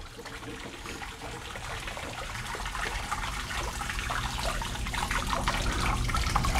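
Water rushing through a wet fire sprinkler riser's main drain during a main drain test, a steady rush that grows gradually louder.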